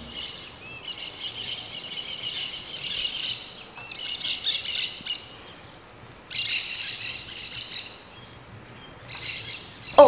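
Birds chirping and twittering in several bursts, a few seconds each, with short quieter gaps between.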